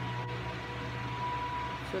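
Steady low background hum with a faint held high tone, and no sudden events.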